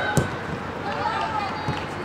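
Women footballers shouting calls to each other on the pitch, high-pitched and short, with a single sharp knock just after the start.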